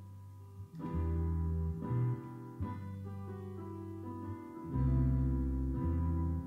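Live band playing an instrumental passage: a Korg stage keyboard, electric guitar and electric bass holding chords, with the bass note and chord changing every second or two.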